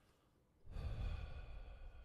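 A man's long, audible breath close on the microphone, starting about a second in after a brief near-silence.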